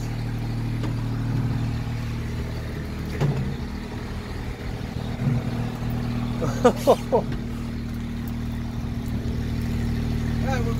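Engine of the machine lifting a boat out of the water, running steadily with a low hum.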